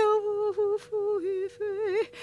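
A woman singing wordless, hummed-sounding notes with a wavering vibrato, in a string of short phrases around one pitch, with quick breaths between them.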